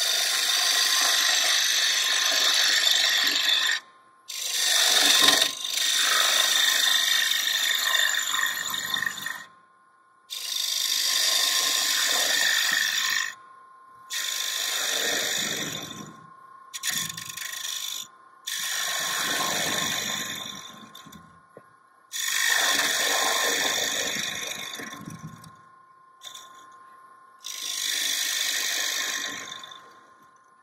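A turning gouge cutting into a small block of wood spinning on a lathe, deepening a hollow. The cutting comes in about eight passes of a few seconds each with short breaks between them, over a faint steady whine.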